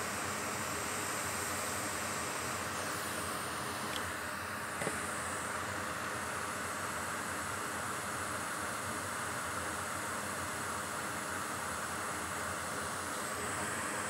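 Steady background hiss with a faint low hum under it, and a small click about five seconds in.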